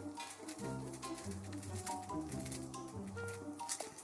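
Soft background music of held, slowly changing notes, with faint small clicks throughout.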